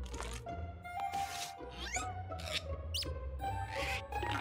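Light cartoon background music with a run of quick comic sound effects: several short swishes and a couple of rising whistle-like slides. They go with a mimed zipping of the mouth, locking it with a key and burying the key.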